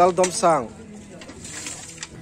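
A voice speaking briefly, then faint splashing and trickling of water as aluminium buckets and basins are rinsed and tipped out.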